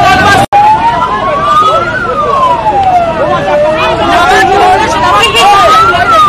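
A siren wailing, its pitch rising and falling slowly, about four seconds up and down, over a crowd of shouting voices. The sound cuts out for an instant about half a second in.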